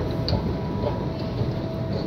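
Underground station ambience: a steady low rumble with a faint constant hum, and a light tap or two.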